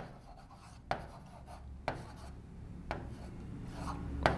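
A pen writing on the glass of an interactive display board: faint scratching strokes, with three light taps about a second apart.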